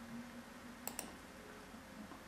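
Two quick, faint clicks about a second in, from a computer being used to advance the presentation to the next slide, over quiet room tone.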